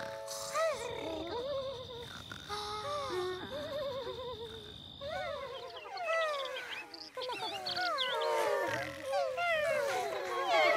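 Many small cartoon creatures (parasprites) chirping and cooing, a scattering of warbling calls at first that turns into a dense chatter of chirps about halfway through, as their number has grown. A steady thin high tone runs under the first half.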